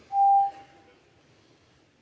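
A single steady beep-like tone, loud for about half a second and then trailing away, followed by a quiet hush.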